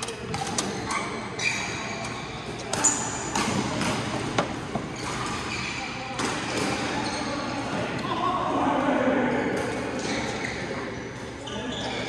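A badminton rally: sharp cracks of rackets striking the shuttlecock and sneakers squeaking on the court floor, with the strongest hits a few seconds in. Voices follow in the hall near the end.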